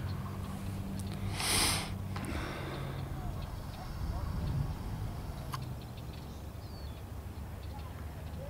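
Faint distant voices over a steady low rumble, with a short loud hiss about a second and a half in and a single click later.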